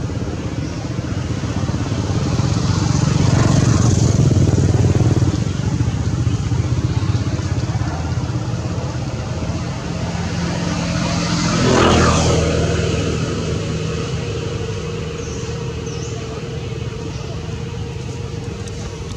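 Motor vehicles passing on a nearby road: the engine noise swells and fades twice, once about three to five seconds in and again, more sharply, about twelve seconds in.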